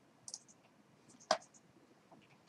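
A few faint clicks, then one sharp, louder click about a second in: a computer mouse button being clicked.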